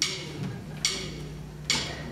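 Count-in before a song: three sharp, evenly spaced percussive clicks a little under a second apart, over a faint held low tone.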